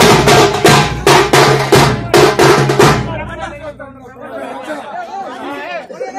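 A group of drums beating a loud, fast, even rhythm that stops abruptly about halfway through, after which voices of men in a crowd are heard.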